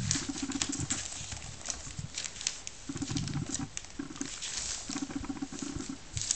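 Three-week-old Border Collie puppies play-fighting: quick scrabbling and rustling of paws on a blanket and newspaper, with a few short low grumbles up to about a second long.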